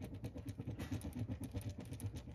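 Marker scribbling on paper: rapid back-and-forth colouring strokes, about six or seven a second, soft and even.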